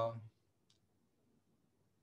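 A man's drawn-out hesitation 'uh' trailing off, then near silence with one faint, short click about three-quarters of a second in.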